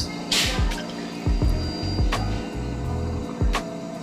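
Canned radler poured into a tall glass, the liquid pouring and fizzing, under background music with a steady beat.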